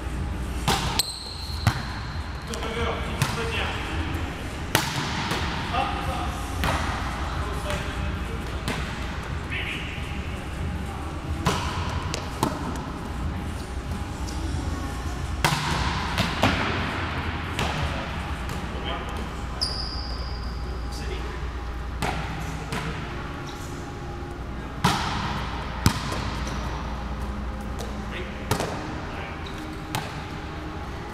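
Volleyballs being hit and bouncing on a hard gym floor during a hitting drill: sharp slaps and thuds at irregular intervals, one every second or few, echoing in a large hall. Two brief high squeaks, about a second in and near the middle, and a murmur of voices run underneath.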